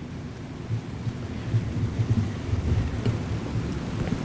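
Microphone handling noise: irregular low rumbling and rustling as a handheld microphone is passed to an audience member and gripped, louder through the middle.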